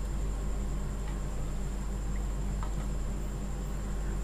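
Steady low hum and hiss of a gas stove burner turned up high under a steel pot of rice and water coming to the boil, with a few faint clicks.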